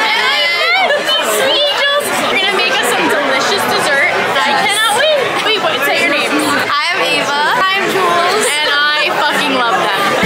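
Several women's voices talking and laughing excitedly over one another, too jumbled to make out words.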